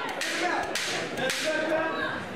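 A few short sharp thuds and slaps from two MMA fighters grappling in a clinch against the cage, with voices shouting in between.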